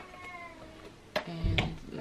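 The metal clasp of a hard box-style handbag clicks as it is opened, two sharp clicks about a second apart. A short, thin, high-pitched call sounds for about half a second just after the first click.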